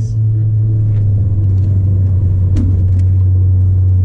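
Ford Focus ST's 2.0-litre turbocharged four-cylinder heard from inside the cabin while driving: a steady low drone with road rumble.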